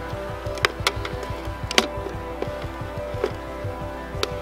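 Background music of steady held tones, over which several sharp clicks sound as the GoPro Karma drone's folding arms are moved and snapped into place, the loudest just before two seconds in.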